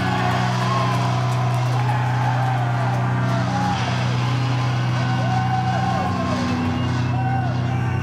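Amplified electric guitar and bass of a live rock band holding a loud, steady low drone, with higher pitches sliding up and down in arcs above it as the song winds down.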